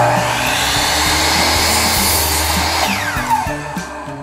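Power miter saw switched on and cutting through a wooden fence picket, a loud steady motor-and-blade noise that starts suddenly. Near the end the trigger is released and the motor winds down with a falling whine.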